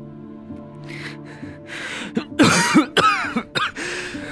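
A man coughing and gasping for breath in a series of harsh bursts, the loudest about halfway through, over soft sustained piano-like background music.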